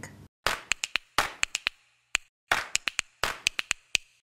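Short, sharp percussive clicks in quick clusters of three or four, with brief silences between them: the percussive opening of a news programme's outro music.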